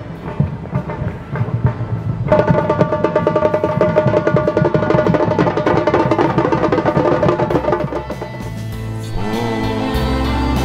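A samba drum band of children playing metal-shelled drums with sticks: a fast, even beat that grows louder and fuller about two seconds in. Near the end the drumming gives way to other music with a melody.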